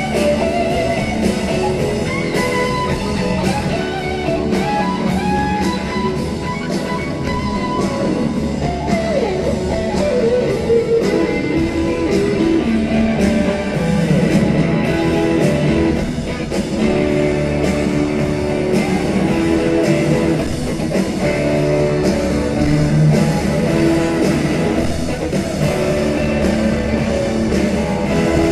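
Live rock band playing a blues-rock song, led by electric guitar playing bending notes over bass and drums.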